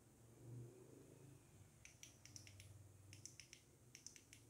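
Near silence broken about halfway through by a run of faint, sharp little clicks in two quick clusters, the handling noise of fingers turning a rough stone over a table.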